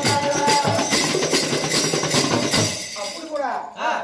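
Folk percussion music with steady drumbeats, jingling and a held melody line, which stops about two and a half seconds in; a man then starts talking.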